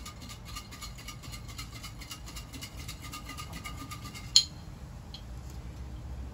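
Small plastic bag of paper name slips being shaken, crinkling rapidly and steadily, then a single sharp click just over four seconds in, after which the shaking stops.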